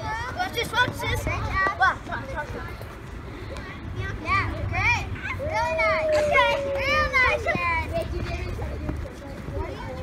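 Children's voices shouting and calling during outdoor play, with one long drawn-out call about five and a half seconds in, over a steady low rumble.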